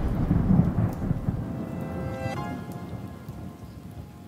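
Thunder sound effect rumbling and fading away under a rain-like hiss. Faint musical tones come in a little past halfway.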